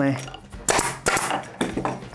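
An upholstery staple gun fires once, driving a staple through the fabric into the wooden chair frame: a single sharp crack a little over half a second in.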